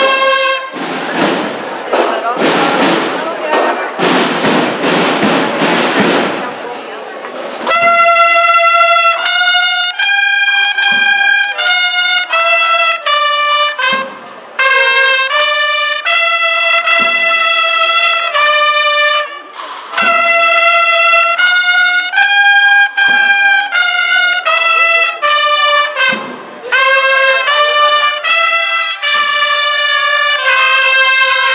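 A procession band of brass bugles (cornetas) playing a slow melody in unison, in held notes that step up and down, with brief breaks between phrases. Near the start a held note gives way to several seconds of dense noise before the melody comes in.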